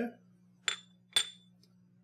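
Two sharp, ringing clinks about half a second apart: a small ceramic bowl knocking against cookware as smashed garlic is tipped into the pan.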